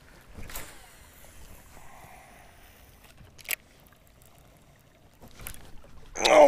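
Baitcasting reel during a cast and retrieve: a faint whir for a couple of seconds, then one sharp click about three and a half seconds in, with a few softer clicks near the end.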